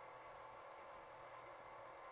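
Near silence: faint steady room tone with a slight hum.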